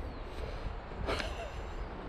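Low wind rumble on the microphone, with a short breathy laugh about a second in.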